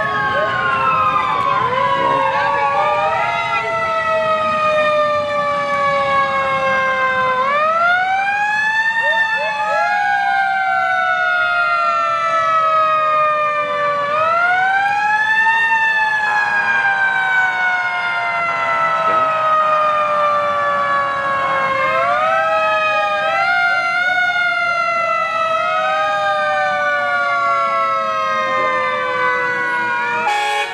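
Fire truck sirens sounding in a parade, several overlapping: each winds up quickly in pitch, then falls slowly over several seconds, again and again. A steady blaring tone joins for a few seconds in the middle.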